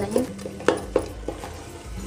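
A metal spoon mashing and stirring soft cooked carrots in an aluminium pressure cooker, knocking against the pot a few times, most sharply a little under a second in.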